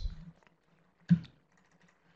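A single short click from the presenter's computer, a mouse or key click picked up by his microphone, in a near-silent pause.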